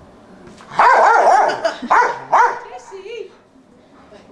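Dog barking on a trampoline: one long, wavering high yelp about a second in, two short barks after it, and a faint lower one near the end.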